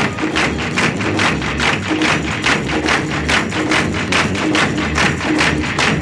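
Music: a song passage driven by a fast, even percussion beat of about four strikes a second over a bass line.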